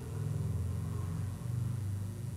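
A low, steady rumbling drone that shifts in pitch about two thirds of the way through.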